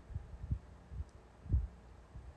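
Soft, irregular low thumps, about four in two seconds, over a faint steady hum.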